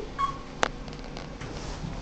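Old Otis elevator after a floor call: one sharp click about two-thirds of a second in, over a faint low hum.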